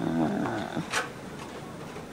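A man's brief, low, rough vocal sound, with a sharp click about a second in.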